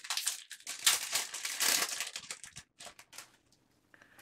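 A plastic trading-card pack wrapper being torn open and crinkled in the hands. It gives a run of crackling rustles that dies away about two-thirds of the way through.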